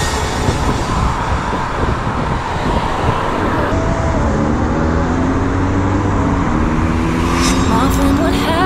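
Road traffic noise and wind on the microphone while riding a bicycle beside moving cars. In the second half a steady engine note slowly rises in pitch.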